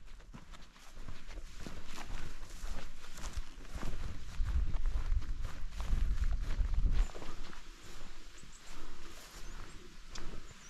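Footsteps of hikers walking through long grass on a hill path, an uneven run of soft steps and rustles. A low rumble builds in the middle and cuts off suddenly about seven seconds in.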